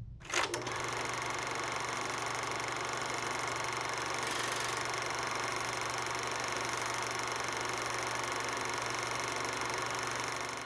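A steady mechanical whirr at an even level, starting with a couple of sharp clicks about half a second in.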